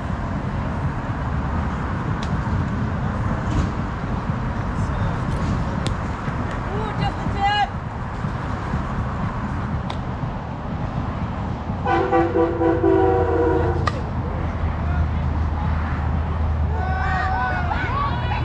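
Outdoor ballfield noise with a steady low rumble and scattered voices; about twelve seconds in a horn sounds one steady, loud note for about two seconds, the loudest sound here, followed by a single sharp crack.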